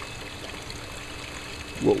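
Steady water trickling and running through an aquaponics system's gravel grow bed, with a faint steady hum underneath.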